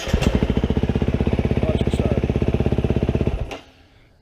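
2011 KTM 350 SX-F dirt bike's single-cylinder four-stroke engine with a full Yoshimura exhaust, fired up on its electric starter and running at a fast, even idle beat, then cut off sharply about three and a half seconds in.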